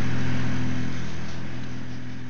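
Steady low mechanical hum with a noisy wash over it, slowly fading.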